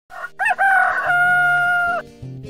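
Rooster crowing: a short rising phrase, then one long held final note that cuts off suddenly at the end.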